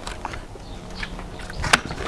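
Remington Express break-barrel air rifle being cocked off camera: a few sharp mechanical clicks and knocks, the loudest near the end, as the mechanism latches and the automatic safety engages.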